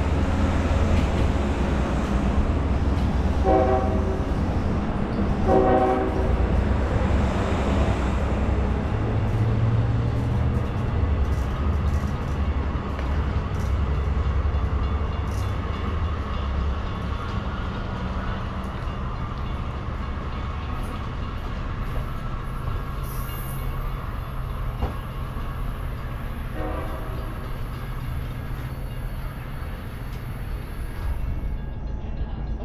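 A diesel-hauled Long Island Rail Road train of bi-level coaches pulling away, its low rumble fading as it recedes. The locomotive's horn sounds two short blasts a few seconds in, about two seconds apart, and once more, fainter, near the end.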